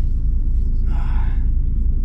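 Steady low rumble of a DAF truck's diesel engine idling, heard from inside the cab, with a brief hiss about a second in.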